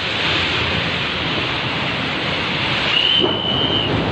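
A loud, steady rushing noise, with a thin, high whistle-like tone lasting just under a second, about three seconds in.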